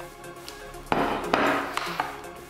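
Background music, with a plate being set down on a wooden table about a second in: a sharp knock followed by a short noisy clatter and a second tap.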